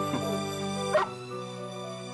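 Soft background music with sustained chords, over which a rough collie puppy gives a short whimper just after the start and a sharp yip about a second in, the loudest sound.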